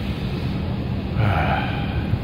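Steady low rumble and hiss of an Embraer 190 airliner's cabin, with a brief muffled vocal sound a little past halfway through.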